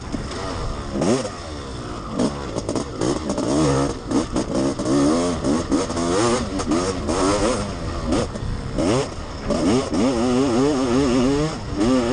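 Honda CR500's single-cylinder two-stroke engine at racing speed, heard from on the bike, its pitch surging up and dropping back again and again as the throttle is worked over the rough track. Short knocks and clatter from the bike over the ruts run through it.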